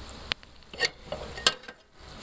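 A few sharp clicks and light knocks over a faint crackling rustle: handling noise from a hand-held camera and hands at a mower deck.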